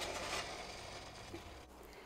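Faint hiss of sugar syrup bubbling in a stainless saucepan, fading away as the pan comes off the boil.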